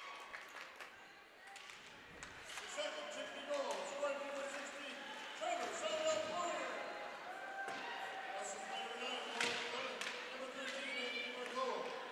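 Ice hockey rink sound: spectators talking and calling out in the stands, with the sharp clacks of sticks on the puck and ice, the loudest crack about nine and a half seconds in.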